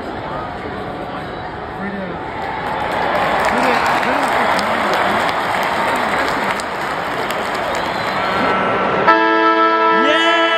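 Stadium crowd noise at a football ground: a din of many voices that swells about three seconds in. Near the end it gives way abruptly to steady music.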